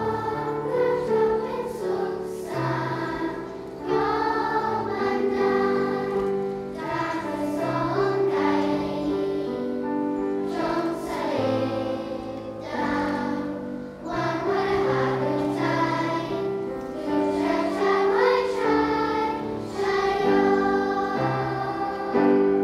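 A large children's choir singing, with held notes and phrases that swell and fall in loudness.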